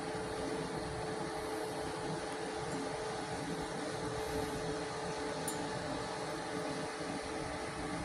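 MultiPro MMAG 600 G-TY inverter welding machine switched on and idling, not welding: its cooling fan running with a steady hum and a faint steady whine.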